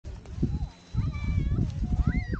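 Wind buffeting the microphone in uneven gusts, with faint thin high calls over it from about a second in.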